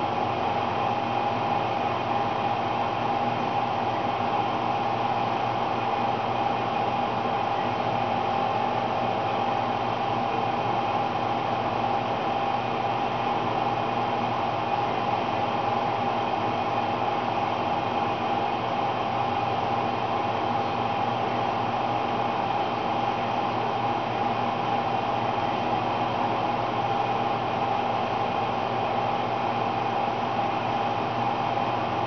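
A steady mechanical hum with several held tones and no rhythm, unchanging throughout.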